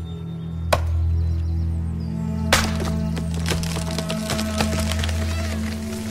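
Wooden knocking and creaking sound effects over a low, steady music drone. A sharp knock comes near the start, and from about two and a half seconds in a dense run of irregular wooden clicks and cracks follows.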